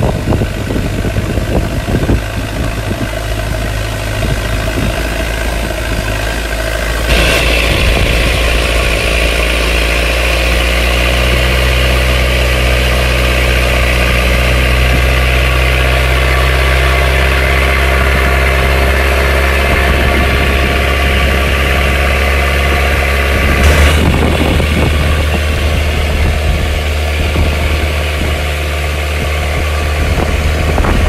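Longtail boat engine running steadily at speed, with rushing water and wind noise. The engine's sound shifts abruptly about seven seconds in and again about three-quarters of the way through.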